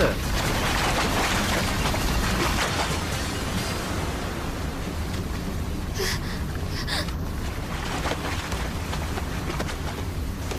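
Cartoon sound effect of a huge ocean wave: a steady rushing roar of water that slowly eases off, with two short sharp sounds about six and seven seconds in.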